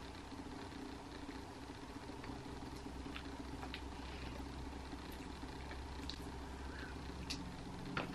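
Quiet room tone: a steady low electrical-sounding hum, with a few faint, short clicks scattered through it.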